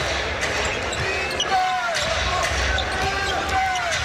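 Basketball dribbled on a hardwood court, bounce after bounce, over arena background noise and voices.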